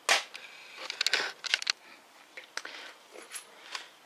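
Sharp clicks and light knocks of hand work on the motorcycle's rear fender fittings: one loud click at the start, a quick cluster about a second in, then a few single ticks.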